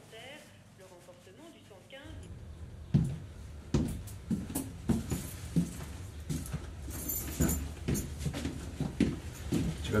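A run of irregular thumps and clicks, roughly one to two a second, starting about three seconds in over a steady low hum.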